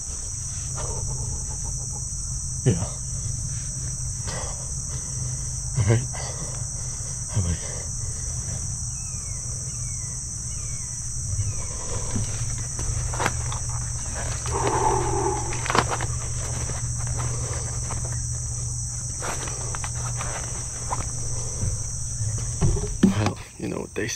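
Steady high-pitched chorus of insects at dusk, with a few scattered knocks and rustles close by.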